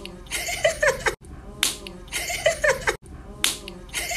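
Finger snaps about every two seconds, each followed by short sliding voice sounds; the same snap-and-voice pattern repeats twice in a row.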